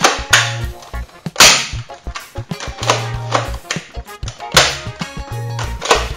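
Background music with a steady bass beat, broken by about six loud, sharp cracks at uneven intervals from toy guns firing.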